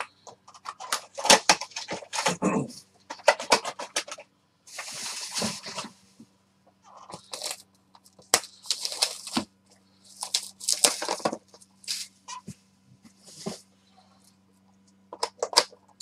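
Stiff cardboard boxes being handled and opened by hand: repeated sliding, scraping and clicking of card against card as a box is lifted from the stack and its lid pulled open.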